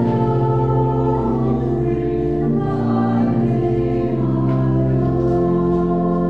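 Church choir singing slow, sustained chords with organ accompaniment, the held notes changing every second or two.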